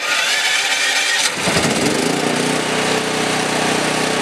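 Westinghouse WGen7500DF portable generator starting: the starter cranks with a slightly rising whine for about a second and a half, then the engine catches and runs steadily.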